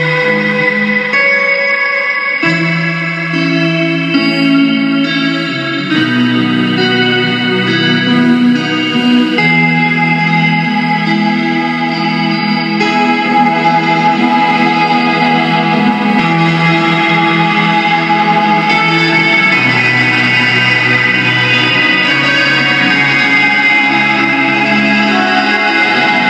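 Live instrumental music: electric guitar played through effects, with echo and chorus, in held chords that change every few seconds.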